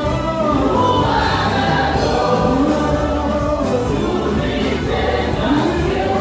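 Church praise team singing a gospel song in chorus through microphones, backed by a live band with drums and bass.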